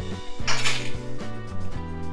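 A brief clatter about half a second in, a bundle of dry spaghetti knocking against a stainless-steel pot as it is stood in the water, over background music with steady bass notes.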